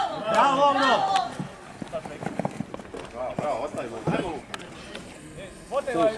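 Shouting voices, loud in the first second and again at the end, fainter in between, with a few light knocks scattered through.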